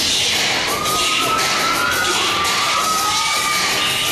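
Audience cheering and screaming over clapping, with several long high-pitched screams from about a second in until near the end.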